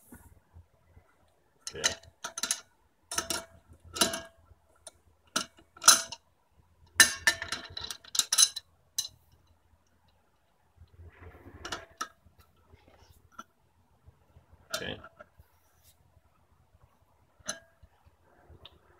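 Scattered metal clinks and knocks of an adjustable wrench against the brass fittings on a gas cylinder valve, in short separate strikes with pauses between them.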